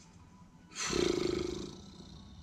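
A sudden loud, harsh, roar-like sound effect from the horror film's soundtrack. It starts abruptly just under a second in and fades away over about a second.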